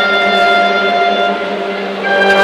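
School marching band's brass and woodwinds holding a sustained chord, which softens slightly near the end.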